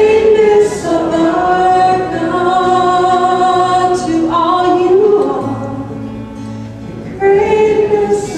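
Voices singing a worship song in long held notes over a steady low accompaniment, the melody moving to a new note every few seconds.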